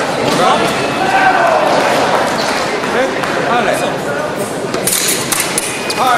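Foil fencing bout in a large echoing hall: footwork thuds on the piste under voices, then a quick cluster of sharp metallic clicks about five seconds in as the foil blades meet.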